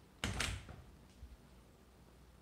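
A short knock or thump about a quarter second in, followed by a fainter knock or two near the middle, over quiet room tone.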